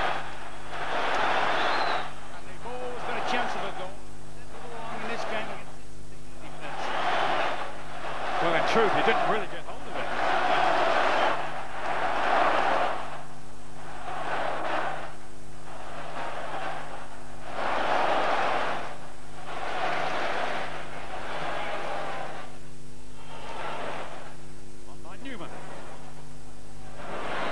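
Stadium football crowd singing and chanting in celebration of a goal just scored, the mass of voices swelling and falling every couple of seconds. A steady low hum runs underneath.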